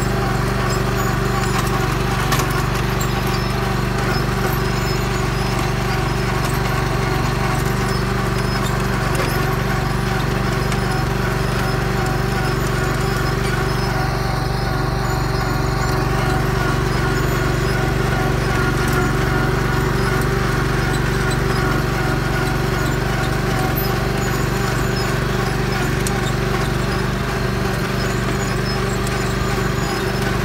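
Tractor engine running steadily at a constant pitch while pulling a bed-forming, plastic-mulch-laying planter across the field, with a steady rhythmic clatter from the implement.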